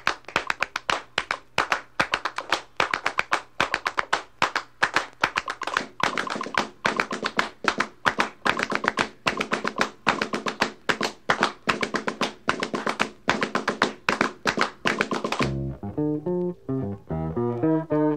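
Avant-garde jazz ensemble recording opening on quick, uneven percussive strikes, about four or five a second, each with a short ringing tone. Near the end the strikes stop and sustained pitched notes with a low bass line come in.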